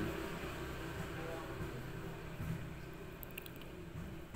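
Steady low background hum with faint hiss, and a few faint light ticks late on.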